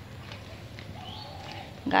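Low, steady outdoor background noise in a pause between talking, with a faint brief tone about halfway through. Talking starts again near the end.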